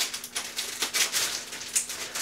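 Plastic packaging crinkling and rustling as a wrapped item is handled, in a run of short, irregular crackles, over a faint steady hum.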